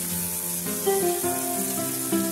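Background music with slow, held notes changing every half second or so, over the faint sizzle of asparagus, peanuts and onion frying in oil in a pan.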